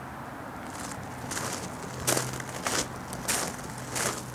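Footsteps crunching on landscaping gravel, about one step every half second or so, starting about a second in, over a steady low hum.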